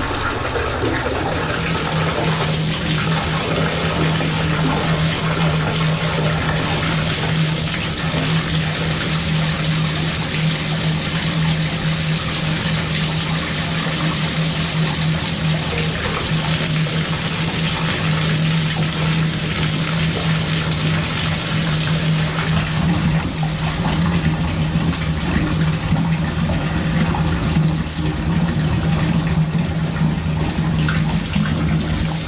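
Water jetting at full pressure from an open copper tub-spout pipe and splashing into a bathtub, a steady rush with a constant low hum beneath it, as the line through a newly installed shower valve is flushed out.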